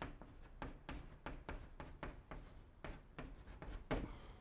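Chalk writing on a blackboard: a quick run of short scratching strokes and taps as characters are written, about four a second, the sharpest one near the end.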